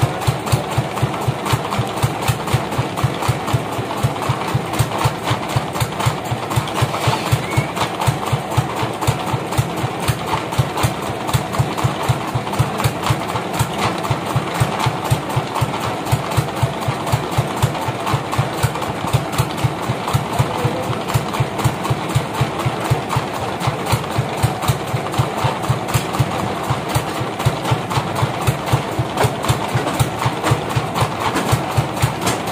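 The engine driving a band sawmill, running steadily without cutting. It has a regular low thudding beat of about four a second.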